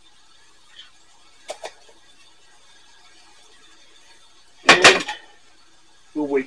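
Light clicks from the plastic AeroPress being handled, then a short, louder clatter of hard knocks about five seconds in as the AeroPress is set down on a ceramic mug.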